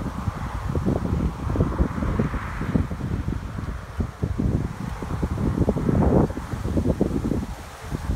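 Wind buffeting the microphone: an uneven, gusting rumble that rises and falls, dipping briefly near the end.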